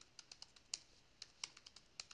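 Typing on a computer keyboard: about a dozen light, irregularly spaced keystrokes as a command is typed.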